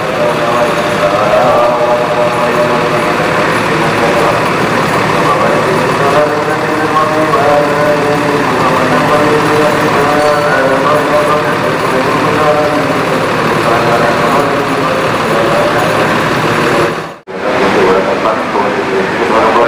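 Steady garage din: a vehicle engine running with indistinct voices in the background. It drops out briefly for a moment near the end, at a cut.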